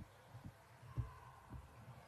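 A few faint, dull thuds on a hardwood basketball court, the loudest about a second in: players' feet and the basketball landing on the gym floor, under a faint steady hum.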